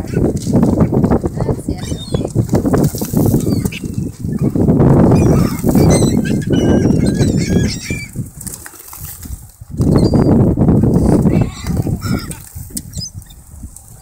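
Wings of a large mixed flock of feral pigeons and gulls flapping in repeated surges as the birds take off and land around scattered feed, with scattered high bird calls over the top.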